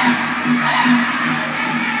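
Powwow drum group singing a grand entry song in high, strained voices over a steady beat on a large shared drum, with a rising whoop right at the start.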